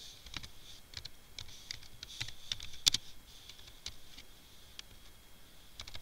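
Typing on a computer keyboard: a run of irregular key clicks, the loudest about three seconds in.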